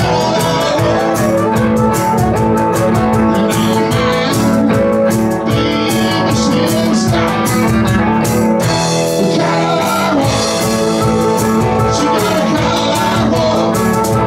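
Live blues-rock band playing: two electric guitars over drums, with a man singing.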